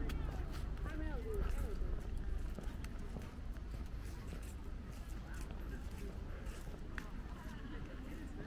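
Outdoor ambience of people talking a short way off, clearest in the first two seconds, with scattered footsteps on stone paving slabs and a steady low rumble.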